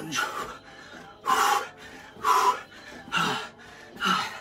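A man exhaling hard in three forceful puffs about a second apart, the breathing of strenuous effort during jump lunges.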